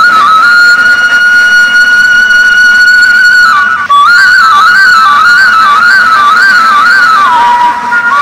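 Bamboo flute (bãshi) played by a duck herder to call his flock to follow him. One long high note is held for about three and a half seconds, then after a short break a quick wavering tune moves back and forth between a few notes and settles on a lower held note near the end.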